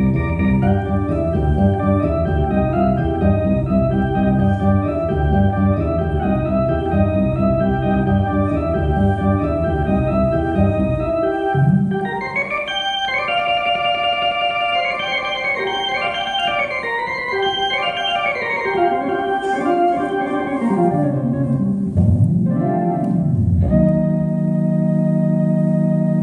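Electronic keyboard played solo with an organ voice: a steady bass pattern under chords for about the first half, then the bass drops out and the right hand plays higher runs with sweeping glides, settling on a held chord near the end.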